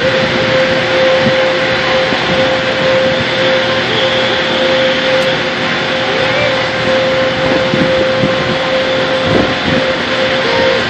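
Steady, even roar of a power plant with a constant hum running through it.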